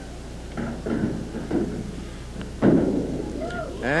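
A candlepin bowling ball crashing into the wooden pins: one sudden clatter about two and a half seconds in that dies away quickly.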